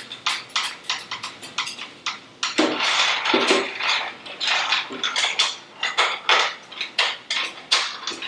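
Clam shells and utensils clicking and clattering in a stainless steel sauté pan of steaming clams, as they are checked to see whether they have opened. A denser, hissy stretch of rattling comes about two and a half seconds in.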